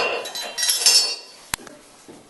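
Metal clinking and jangling from a bull ring grip implement and its loaded pin as they are handled, with a sharp knock at the start and a single sharp click about one and a half seconds in.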